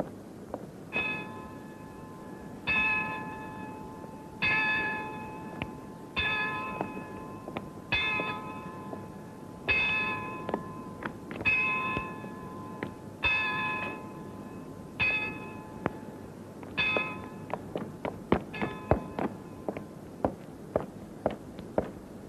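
A church bell tolling slowly and evenly, about ten strokes nearly two seconds apart, each ringing out and dying away. After the last stroke, a run of quick, sharp clicks follows.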